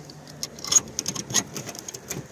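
Packed snow crunching in a series of irregular crunches and clicks.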